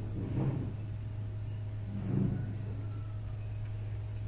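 Chalk writing on a blackboard: two short scratchy strokes, about half a second and about two seconds in, over a steady low hum.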